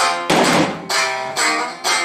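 A minmin, a Japanese plucked string instrument, being played in a run of separate plucked notes that each ring and fade, with a harsher strummed stroke about a third of a second in.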